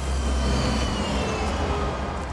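City bus pulling away from a stop, its engine rumbling low and steady with a faint high whine that slowly falls in pitch.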